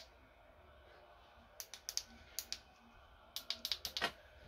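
Buttons on an LED light's inline cable control being pressed: a run of short, faint clicks starting about a second and a half in and bunching together near the end.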